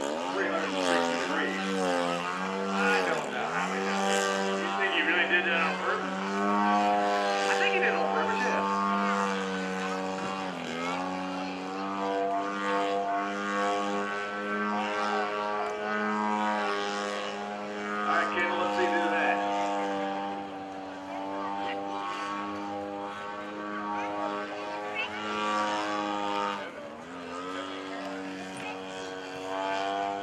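The propeller and gasoline engine of a large radio-controlled Pitts Model 12 scale biplane, a DA-100 engine of about 10 horsepower, running in flight. It holds a steady drone that sags in pitch and climbs back several times as the throttle is eased and reopened through aerobatic manoeuvres.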